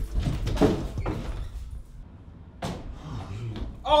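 Bumps and door knocks as a man rushes out of a room, with one sharp bang partway through. Near the end he cries out "oh".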